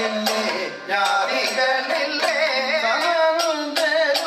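Kathakali music: a voice singing a wavering, ornamented melodic line over regular sharp percussion strikes.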